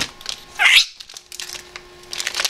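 Rainbow lorikeet giving one short, shrill squawk that falls in pitch, just after half a second in, with light clicks and rustles of the bird moving about on the desk.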